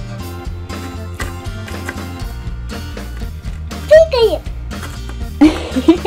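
Background music with a steady beat, with a child's voice sounding briefly about four seconds in and again near the end.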